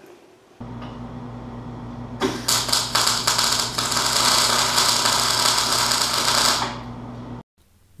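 A wire-feed welder's arc crackling steadily for about four and a half seconds as a bead is laid on thin sheet steel, over a steady electrical hum that starts first and cuts off shortly after the arc stops.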